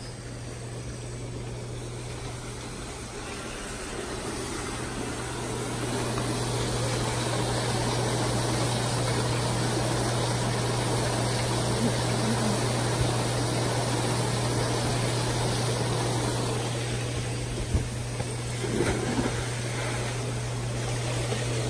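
Hot tub jets running: a steady pump hum under rushing, bubbling water that grows louder a few seconds in and eases near the end. A few small knocks near the end.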